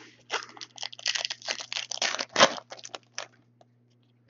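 Foil wrapper of a trading-card pack being torn open and crinkled by hand: a quick, irregular run of crackles and rips, the loudest about two and a half seconds in.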